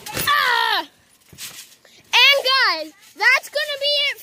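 Children's high-pitched yells without clear words: a falling yell in the first second, then louder yelling about two seconds in and again near the end.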